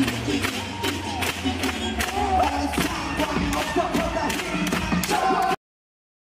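Live concert music with a strong steady beat, heavy bass and vocals, heard from the audience with crowd cheering; it cuts off suddenly near the end.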